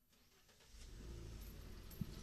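Near silence, then under a second in a faint low rumble of street background, typical of distant road traffic.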